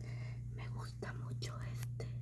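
A woman whispering a few words, breathy and unvoiced, over a steady low hum.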